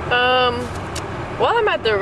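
A woman's voice inside a moving car: one held vocal sound near the start and a short gliding one from about halfway, over the steady low rumble of the car's road and engine noise in the cabin.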